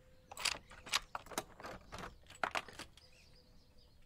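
A door's lock and handle being worked: a run of irregular clicks and rattles lasting about two and a half seconds as the locked door is unlocked and opened.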